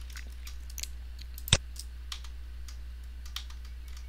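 About a dozen light, irregular clicks from a computer mouse and keyboard, one louder about one and a half seconds in, over a steady low hum.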